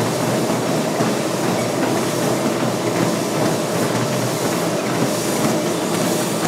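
Treadmill running with a person walking on its moving belt: a steady, even noise from the belt and motor.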